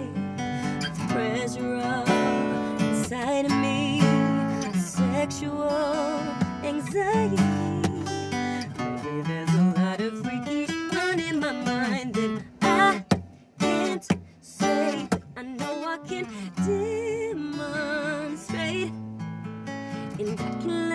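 A woman singing a slow R&B song to a steel-string acoustic guitar that is strummed and picked. About twelve seconds in, the guitar plays a few short stabs with brief gaps between them before the strumming resumes.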